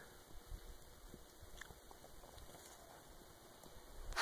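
Near silence in the still air of deep snow, with a few faint soft ticks.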